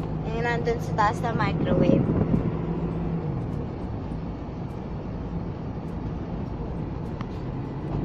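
Inside a moving car: a steady low engine drone with road noise, its pitch shifting down a little about three seconds in.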